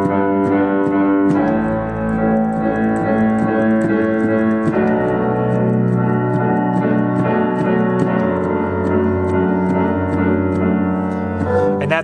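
Digital keyboard playing held chords with a steady repeated pulse through them, the chord changing about every three seconds. It is a straight build, a pulsing rhythm that drives energy into a new section of a worship song.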